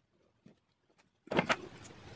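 Near silence, then about a second and a half in, a few soft clicks and rustles of small parts being handled.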